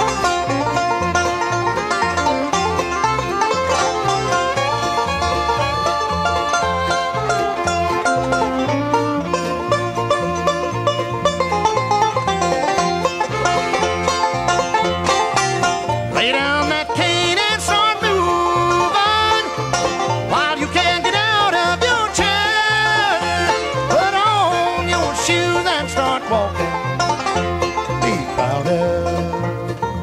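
Bluegrass band playing an instrumental break with no singing: banjo picking over guitar and bass with a steady beat. About halfway through, a lead line with sliding, wavering notes comes to the front.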